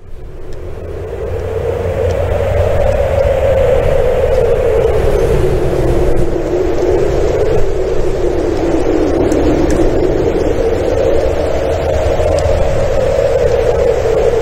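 Steady heavy rain with a low rumble, fading in over the first two seconds.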